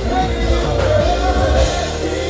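Live R&B band playing a slow song through the PA, with singing over a heavy, steady bass.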